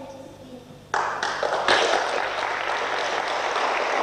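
Audience applauding, starting suddenly about a second in.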